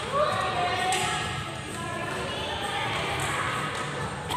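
Indistinct voices echoing in a large sports hall between badminton rallies, with an occasional sharp knock.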